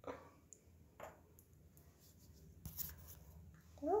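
Faint handling sounds of a small plastic toy lotion container and a plush toy: a few soft clicks, then a brief rustle about three seconds in.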